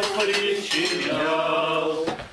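Cutlery and dishes clinking at a table, with a few clinks near the start, while a group of voices sings a slow hymn.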